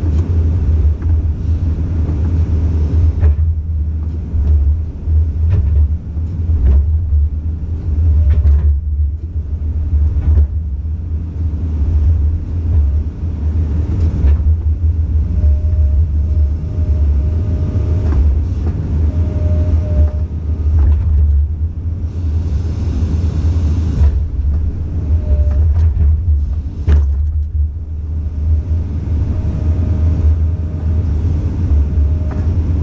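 Komatsu PC200 excavator's diesel engine running steadily, heard from inside the cab as a loud low rumble. A thin whine comes and goes several times in the second half as the boom and bucket move, with a few sharp knocks.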